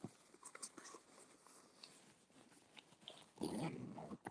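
A small dog sniffing and snuffling close to the microphone: faint clicks and snuffles, then a louder, rustling snuffle near the end.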